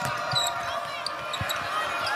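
A basketball bouncing on a hardwood court: a few dull dribbles, one plainly louder about one and a half seconds in, over steady arena background noise.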